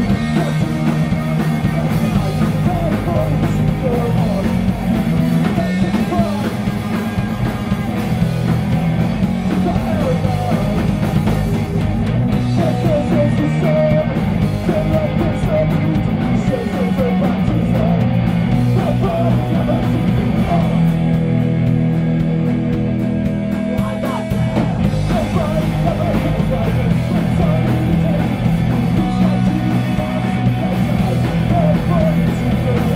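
Punk band playing live: distorted electric guitar, bass guitar and drums with a male vocalist singing into the microphone, loud and unbroken.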